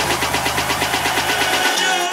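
Electronic dance music from a DJ set, with a fast, even hi-hat-like pattern over a buzzy bass line. The bass cuts out about three-quarters of the way through.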